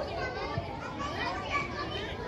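Many children's voices calling and shouting over one another, with no single voice standing out.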